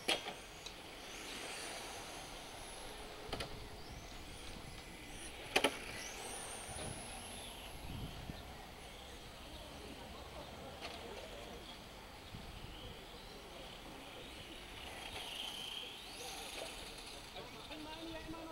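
Electric radio-controlled touring cars' high-pitched motor whine, rising and falling as they accelerate and brake around the track. A sharp click about five and a half seconds in is the loudest sound.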